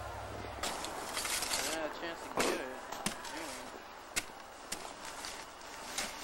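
Faint, distant voices calling out over a steady outdoor hiss, with a few sharp clicks scattered through it. A low hum cuts off about half a second in.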